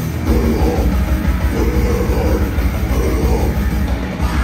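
A live grindcore band playing loud: distorted electric guitar, bass guitar and a drum kit pounding without a break.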